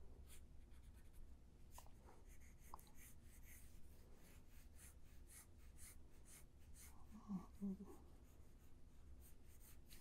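Faint scratching of a Prismacolor pencil on paper, many short strokes, with two soft low sounds about seven seconds in.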